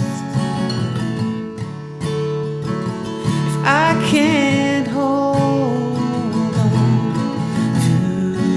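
An acoustic guitar strummed in a song, with a melody line that slides up and wavers about halfway through.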